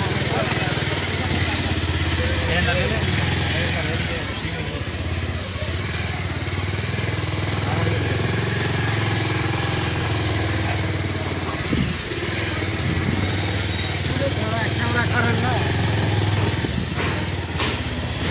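Motorcycle engine running steadily while riding, with brief dips in level.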